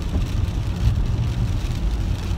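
Steady low road and tyre rumble heard inside a moving car's cabin.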